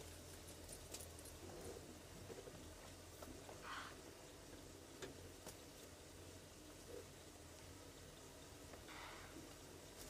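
Near silence in the bush, with faint distant bird alarm calls twice, about four and nine seconds in, over a low steady hum.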